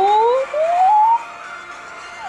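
Recorded whale song: a long moaning call that glides smoothly up in pitch for about a second and then stops.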